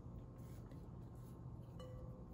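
Faint handling of dough in a glass mixing bowl over a steady low room hum, with a light click near the end.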